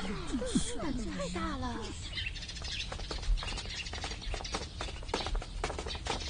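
Several women's voices murmuring and chattering over one another for about two seconds, then a quieter stretch with only faint scattered clicks.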